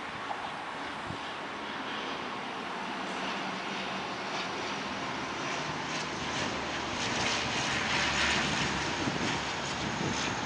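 ATR-72 twin turboprop airliner on landing approach, its engines and propellers running with a thin high whine over the drone, growing steadily louder as it nears and loudest about eight seconds in.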